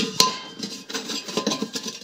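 Steel soup can clinking and scraping against the rim of a steel paint can as it is pressed in to clip into place. Two sharp metallic clinks with a brief ring come right at the start, followed by lighter scraping rattles.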